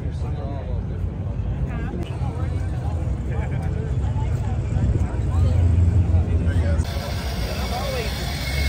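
Chatter of a crowd of people over a low car-engine rumble that swells louder about five seconds in.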